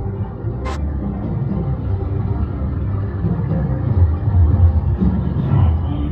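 Family roller coaster train rumbling along its track through an indoor ride section, with the ride's background music playing.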